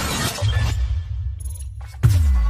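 Cinematic intro sound effects: a burst of noise that fades within the first half second, then a deep, sustained bass rumble, with the higher sounds thinning out near the end.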